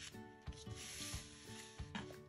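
Glossy magazine paper rubbing and sliding under the hands as the pages are handled and moved. It is a faint, soft rustle that starts about half a second in and lasts over a second.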